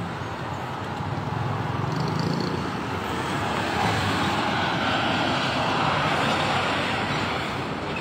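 Heavy lorry driving past, its engine rumble and tyre noise swelling over a few seconds and easing off near the end.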